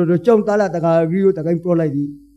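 A man's voice preaching in Rakhine, a Buddhist sermon delivered through a microphone.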